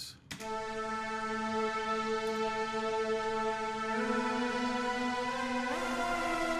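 Sampled Solina string-ensemble synth, Studio One's stock Presence XT 'Solina Space A' patch, playing sustained string chords unprocessed. The chord changes about four seconds in and again near the end.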